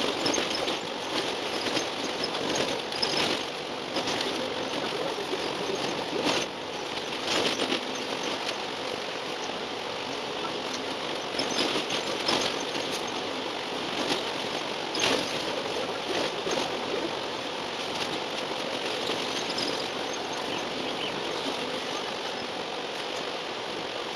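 Cabin noise on the upper deck of an Alexander Dennis Enviro400 double-decker bus on the move, sped up fourfold: a dense, steady rush with frequent sharp rattles and knocks.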